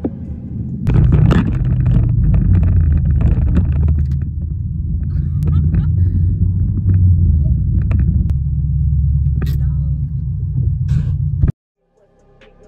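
Loud low rumble of a Subaru's engine and road noise heard from inside the cabin, starting suddenly about a second in and cutting off abruptly just before the end. A person's voice breaks in briefly a few times over it.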